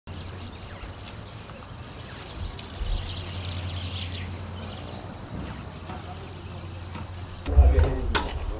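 Insects trilling steadily in grass, a continuous high-pitched drone over a low rumble. Half a second before the end the drone cuts off and a loud low thump sounds.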